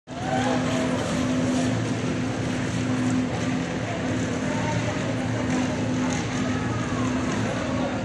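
Construction-site noise: an engine or machine running with a steady hum, with workers' voices in the background.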